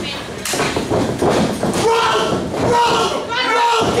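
A single sharp impact about half a second in as the wrestlers grapple in the ring, followed by people shouting.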